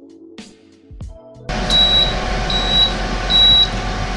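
Quiet background music, cut off about a second and a half in by the Power Air Fryer Oven 360's convection fan running loudly. Over the fan come three short, evenly spaced high beeps: the oven's signal that it has reached its 425° preheat temperature.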